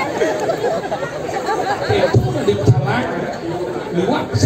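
Speech: a performer talking into a microphone over a sound system, with audience chatter behind.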